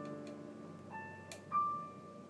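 Digital piano playing a few sparse single high notes, each ringing and fading. The loudest note comes about a second and a half in, just after a sharp click.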